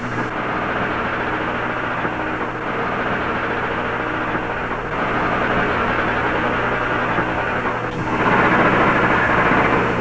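Steady rushing roar of the Multiple Kill Vehicle test article's rocket thrusters as it hovers on its exhaust jet, getting louder about halfway through and again near the end.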